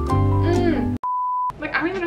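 Background music with sustained chords, cut off about a second in by a steady single-pitch beep lasting about half a second: a censor bleep over a word.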